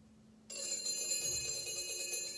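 Sanctus (altar) bells rung at the elevation of the consecrated host, marking the consecration: a bright, shimmering ring of small bells begins suddenly about half a second in and carries on.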